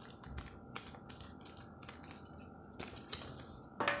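Thin cardboard being handled and creased by hand along a fold line: a scatter of short, faint clicks and rustles at an irregular pace.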